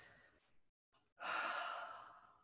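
A person sighing: one breathy exhale, starting a little past halfway through.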